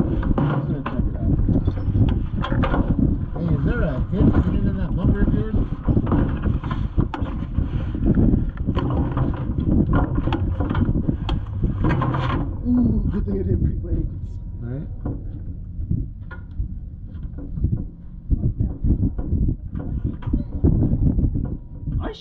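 Indistinct, muffled talking over a low, uneven rumble inside a stopped race car's cab.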